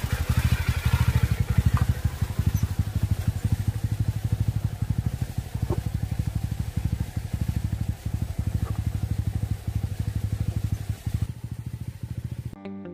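Motorcycle engine running at low speed, its exhaust giving a fast, even pulsing beat as the bike pulls away over a rough cobbled track. The sound is loudest at first and slowly fades as the bike moves off.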